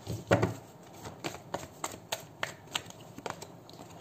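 A deck of oracle cards being handled: the cards shuffled and drawn, a string of quick, irregular clicks with one louder rustle about half a second in, and a card laid onto the spread near the end.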